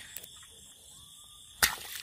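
A hand slapping down into the grass to grab a frog: one sharp swishing slap about one and a half seconds in.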